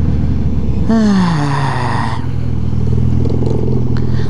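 Motorcycle engine running through an open exhaust pipe with the muffler removed: about a second in the revs jump and then fall away over half a second, with a hiss over the top, before the engine settles back to a steady note.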